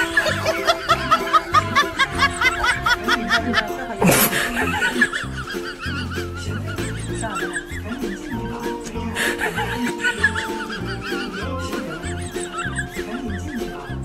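Background music with a steady beat, with bursts of human laughter over it, heaviest at the start and again around the middle.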